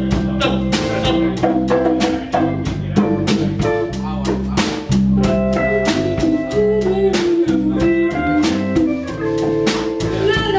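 Live band playing an instrumental passage: a drum kit keeps a steady beat under bass guitar, electric guitar and congas.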